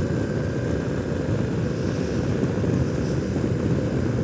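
2008 BMW R1200R boxer-twin engine running steadily at cruising speed, mixed with tyre and wind noise from riding on hard-packed gravel; the sound stays even with no changes in speed.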